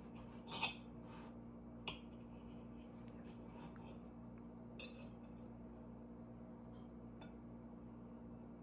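Knife cutting a slice of coconut cake and clicking against the plate: a few short clicks, the loudest about half a second in and another near two seconds, over a faint steady hum.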